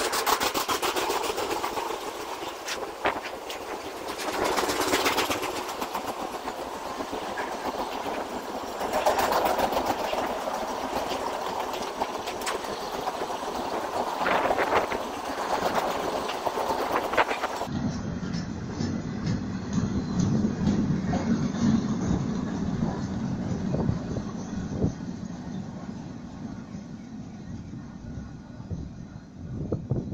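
Freight train wagons rolling past on the track, their wheels clattering over the rail joints with a steady run of clicks. The sound eases off near the end as the last wagons draw away.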